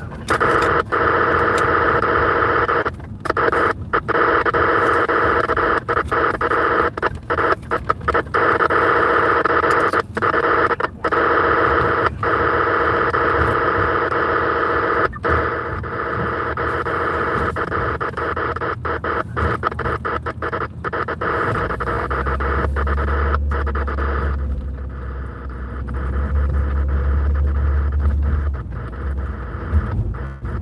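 Scanner radio hiss: loud static with the squelch open, cutting out briefly again and again. A low hum joins about twenty-two seconds in and fades near the end.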